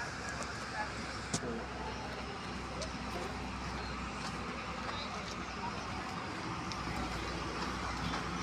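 Steady outdoor street noise with distant traffic, and a few sharp clicks from footsteps on the gravel road.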